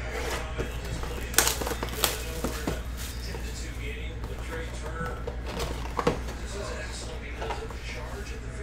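Hand handling of a sealed trading-card box: plastic wrap crinkling as it is torn off, then the cardboard box opened and a hard plastic card case slid out. A few sharp crackles and taps stand out, about one and a half, two and six seconds in.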